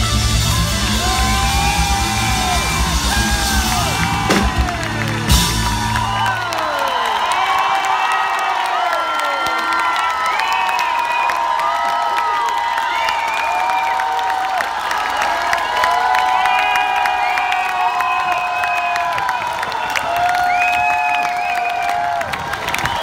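Live rock band with drums playing the end of a song, stopping about six seconds in. After that the crowd cheers and whoops for the rest of the time.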